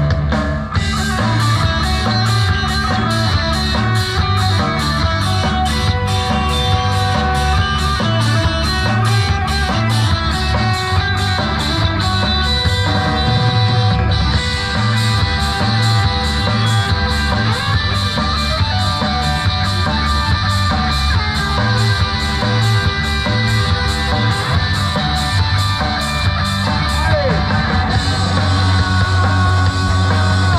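Live rock band playing: electric guitars and bass over a steady drumbeat of about two hits a second.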